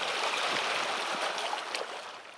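Steady hiss of lake water among broken floating ice around a boat, with a few faint ticks, fading out near the end.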